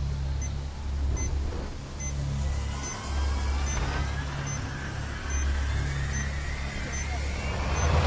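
Patient monitor beeping about once every 0.8 seconds, in time with a heart rate of about 72, over a steady low rumble that swells and dips. Faint rising tones come in towards the middle.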